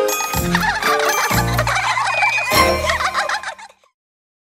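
Closing theme music of a cartoon teaser: three deep hits about a second apart under a high, rapidly warbling flurry, fading out just before the end.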